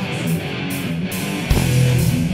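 A rock band playing live: electric guitar over drums and cymbals, with a heavy accent about one and a half seconds in.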